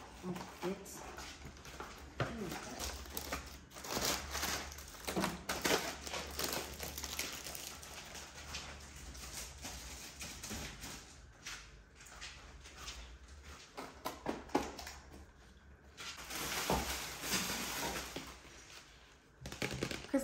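Plastic food packaging being handled and put away in a kitchen: scattered knocks, clicks and crinkling, with a longer stretch of rustling near the end.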